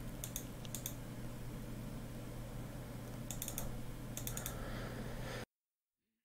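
Computer keyboard keystrokes in a few short, faint bursts of clicks over a steady low hum. The sound cuts off suddenly near the end.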